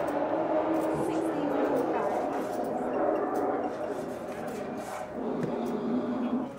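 Indistinct chatter of voices at a café counter, with no single clear speaker.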